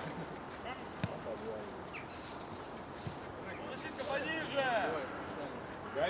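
Footballers' shouts carrying across an outdoor pitch, with a few sharp knocks of the ball in the first half and a call near the end.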